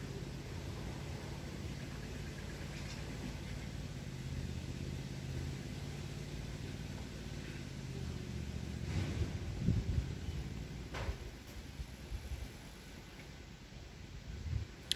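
A steady low mechanical hum, with some brief handling noise about nine to ten seconds in and a single sharp click about a second later.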